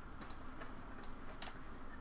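A few faint, light clicks of a clothes hanger being handled as a blouse is hung on a dress form, the sharpest about one and a half seconds in.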